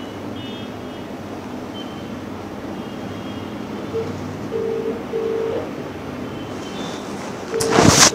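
Steady background hiss of room noise with a few short beeps in the middle, then a loud rustling knock near the end as the phone filming is handled and moved.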